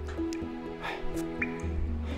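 Dripping water in a cave, a few separate drops falling over slow background music of held notes.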